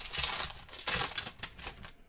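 Foil wrapper of a 2023-24 Optic basketball card pack being torn open and crinkled by hand, in two bursts of crinkling about a second apart.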